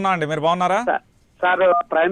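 A man's voice speaking in a news-reading manner, with a brief pause a little past halfway.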